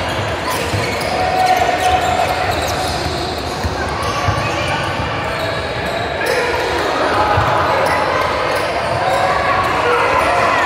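Basketball bouncing on a hardwood gym floor as it is dribbled, the thuds coming irregularly and echoing in a large hall, with players and spectators calling out.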